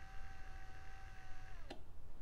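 A 400 lb-force feedback linear actuator's small geared DC motor whines steadily as it retracts to its home position. About a second and a half in, the pitch falls away as the motor stops at the set position, and a single click follows.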